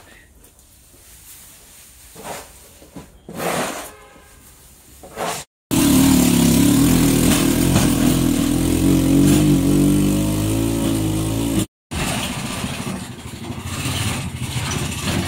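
Shovels scraping and scooping a pile of chopped straw feed off a concrete floor in a few short strokes. About five and a half seconds in, a motorized farm tricycle's engine takes over, running steadily and loudly for about six seconds as it hauls a load of straw, then cuts off abruptly, followed by a quieter steady engine hum.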